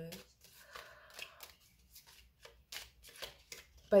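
Oracle cards being shuffled by hand: a quiet, irregular run of short card flicks and rustles.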